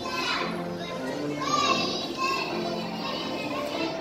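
Music playing with many young children's voices over it.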